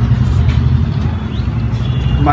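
A loud, steady low rumble of background noise.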